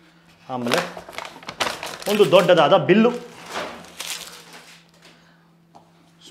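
Paper and cardboard takeaway packaging rustling and crinkling as a carry bag and boxes are handled, in short bursts between a man's speech.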